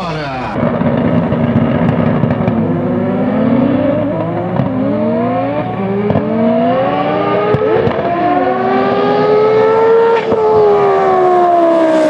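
Drag-racing car's engine revving hard from the start line, its pitch climbing and dropping several times, with a burnout sending up tyre smoke.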